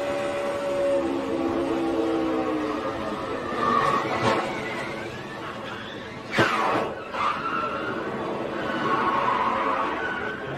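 In-car audio of a NASCAR Cup Toyota's V8 running at speed, its note falling away as the car gets caught in a crash, followed by squealing tyres and sharp bangs of contact about four seconds in and a louder one about six and a half seconds in as the car is hit and spins.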